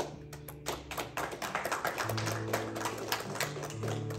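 Acoustic guitar playing, with a rapid, irregular run of sharp taps and clicks over the notes for about four seconds.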